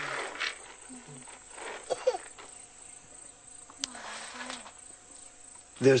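Insects buzzing steadily, with a few brief faint voices in the background.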